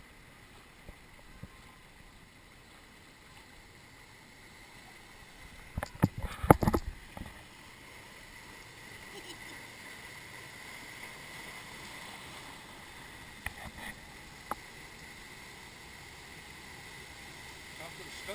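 Rushing water in a river rapids ride channel around a round raft boat, growing louder in the second half as the boat nears a waterfall. A cluster of sharp knocks about six seconds in is the loudest sound, with a few smaller knocks near the end.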